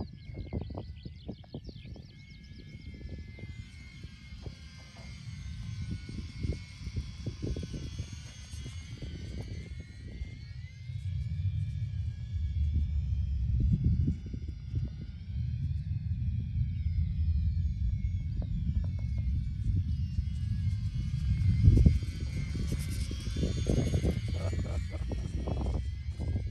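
High-pitched whine of a UMX Twin Otter model plane's twin electric motors and propellers flying overhead, the pitch sliding down and up as it passes and turns. Heavy wind rumble on the microphone is the loudest sound.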